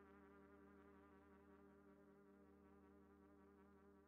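Very faint trumpet sound: a held note with a slight vibrato, slowly fading away as the music ends.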